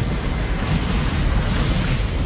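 Film soundtrack of rough sea: waves crashing and spraying against WWII landing craft as they motor through the swell, with wind and a steady low rumble.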